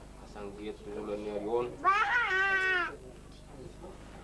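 A small child's high-pitched cry, about one second long, starting about two seconds in and sagging slightly in pitch at the end, over background talk.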